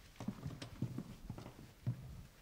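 Footsteps of hard-soled shoes on a hard floor: a run of uneven knocks a few times a second.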